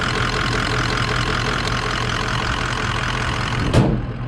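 Ford 6.0-litre turbo diesel V8 idling steadily with the hood open. A brief loud bump comes near the end.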